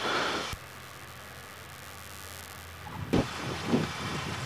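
Cockpit audio of a Cessna 172 in the landing flare and touchdown, heard through the headset intercom. A short rush of noise at the start cuts off abruptly, leaving a low steady engine-and-airflow hiss, and a thump comes about three seconds in as the wheels settle onto the runway.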